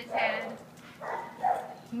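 Dog giving a short wavering whine near the start, then a softer, briefer whimper about a second and a half in.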